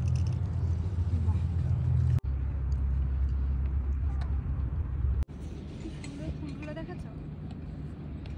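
Wind blowing on the phone microphone, a steady low noise that drops out sharply twice, about two and five seconds in, and is weaker after the second break.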